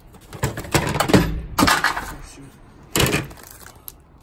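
Items being shifted around by hand in a plastic storage tote: rustling and knocking against the plastic in three bursts, about half a second in, around two seconds, and near three seconds.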